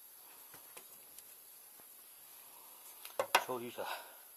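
A few light metallic clicks of hand tools, then a sharp metal clink about three seconds in as a ring spanner is handled at the engine's timing belt end.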